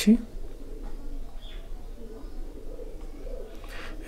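Quiet room noise with a steady low hum and faint low bird cooing in the background.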